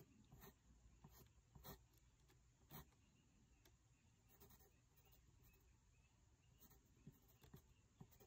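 Faint scratching of a graphite pencil sketching short strokes on drawing paper, in irregular light scrapes and taps.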